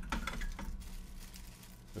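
A small clear plastic bag of tool accessories crinkling and rustling as it is handled and opened, louder in the first second.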